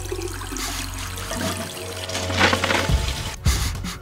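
A toilet-flush sound effect: a rush of running water, swelling about two and a half seconds in, with background music under it.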